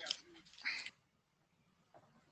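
Near silence on a video-conference audio line, with two short faint noises in the first second.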